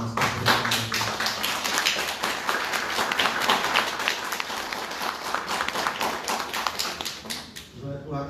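Audience applauding: dense hand clapping that starts under the last words of a man's voice, lasts about seven seconds and stops near the end.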